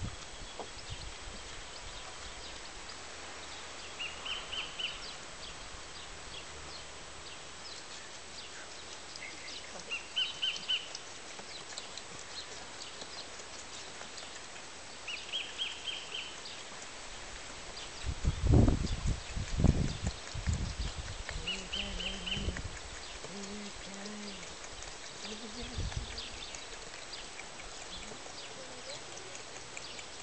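Outdoor background with a short high bird trill repeating about every five to six seconds. About two-thirds of the way through come a few loud low knocks, followed by several short low hums.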